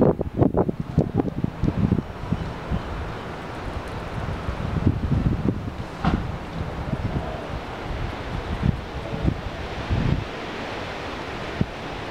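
Wind rushing through leafy trees, the leaves rustling, with strong gusts buffeting the microphone in the first couple of seconds and a few brief gusts later.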